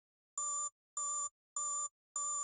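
Electronic beeping: a steady pitched beep about a third of a second long, repeated three times at an even pace of roughly one and a half beeps a second.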